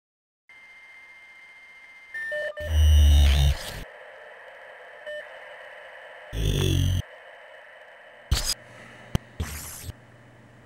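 Electronic title sound effects: a steady hum with a high tone, a few short beeps, then loud bursts of static with a deep buzz, one with a falling pitch past the middle, and sharp clicks near the end.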